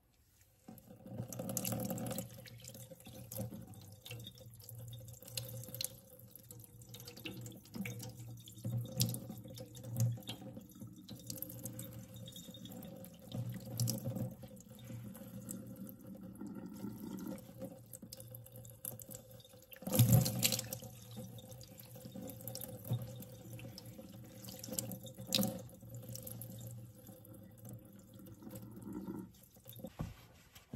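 Water poured from a glass cup over a person's wet hair, splashing and running off into a kitchen sink, with a few louder splashes along the way; it stops shortly before the end.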